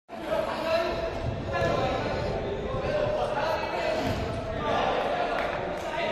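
Football being kicked and bouncing on artificial turf, with players' shouts echoing around a large indoor sports hall.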